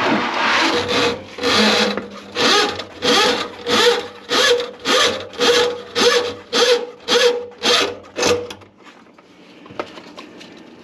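Drain auger cable rasping back and forth inside a kitchen sink drain line, in regular strokes about two a second, as it is worked against a grease clog; the strokes stop near the end.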